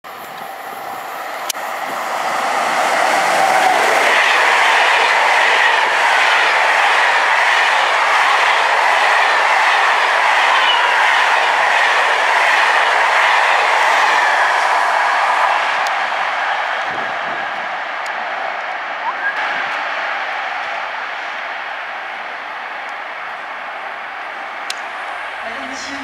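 BB 26000 electric locomotive and Intercités coaches passing at about 150 km/h. The rush of noise builds over the first few seconds, stays loud and steady as the coaches go by, then fades away from about two-thirds of the way through, with a few sharp clicks.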